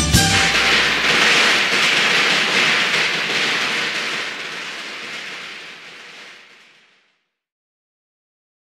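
The ending of a Chinese pop song: a last struck chord, then a cymbal wash that rings on and fades gradually away to silence about seven seconds in.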